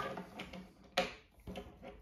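A few light plastic clicks and knocks from toy trains being handled or bumping together, with one sharper click about a second in.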